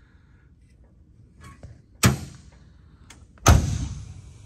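Car door of a 1968 Chevrolet Camaro being pushed shut twice: a lighter shut about two seconds in, then a louder, firmer slam near the end.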